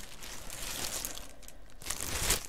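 Clear plastic bag crinkling as it is handled, an irregular crackle that dips briefly near the end.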